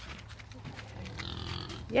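A farm animal calls once, faintly, for just under a second past the middle, over a steady low hum.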